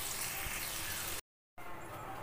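Potato cubes sizzling in hot oil in a kadhai, a steady hiss that cuts off abruptly about a second in. After a brief silence a quieter steady hiss resumes.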